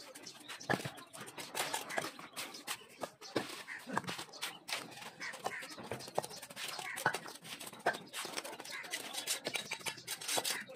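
Masonry trowel working wet mortar on a brick wall: irregular scrapes and short taps of steel on mortar and brick.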